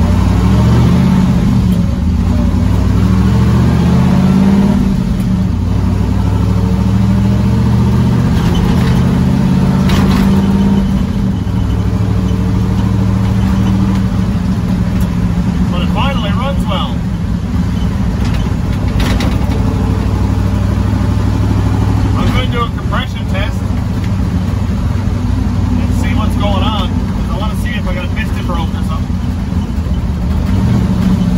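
Twin-turbo destroked 6-litre V8 of a 1957 Chevy pickup heard from inside the cab while driving. It rises in pitch as it accelerates over the first few seconds, then runs steadily. The owner calls the engine noisy, with a clacking he has yet to trace despite good oil pressure.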